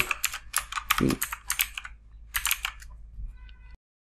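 Computer keyboard typing: a quick run of keystrokes that thins out after about three seconds, then the sound cuts off abruptly near the end.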